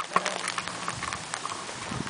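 Raindrops striking a taut umbrella canopy just overhead: many irregular sharp taps over a light, even hiss of rain.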